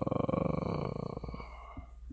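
A man's drawn-out, creaky hesitation sound, "uhhh", trailing off mid-sentence and fading out a little past halfway. After it comes quiet room tone with a faint click near the end.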